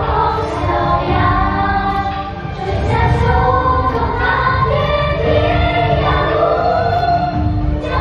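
A group of young children singing together over backing music with a steady beat.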